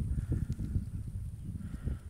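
Low, irregular rumbling and crackling noise on a handheld phone's microphone.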